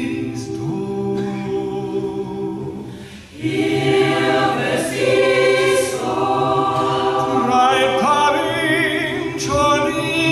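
Mixed choir of men and women singing a cappella in chords. The singing breaks off briefly about three seconds in, then comes back louder and fuller.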